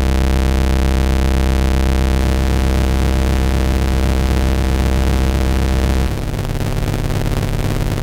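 Software modular synth patch (a Reaktor 6 Blocks recreation of the MOTM-120 Sub Octave Multiplexer) sounding a loud, buzzy drone of stacked sub-octave square waves with heavy bass, two oscillators cross-modulated together. The tone shifts as its settings are switched: its texture changes about two seconds in, and the deepest bass drops away about six seconds in.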